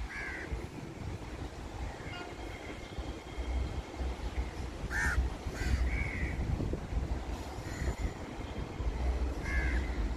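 Crows cawing: about four short calls, one near the start, two about five seconds in and one near the end, over an uneven low rumble.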